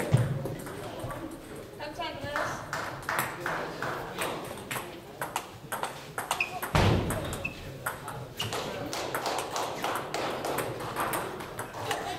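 Table tennis balls clicking off bats and tables in quick irregular runs, from the rally at the near table and others around the hall. Two dull low thumps stand out, one at the start and one about seven seconds in.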